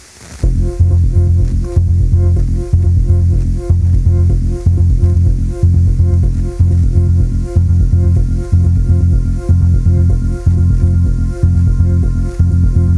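Electronic pop song played by a band with drums and synthesizers, starting about half a second in after a brief hiss. A heavy bass line pulses under repeating synth notes, with a sharp beat about once a second.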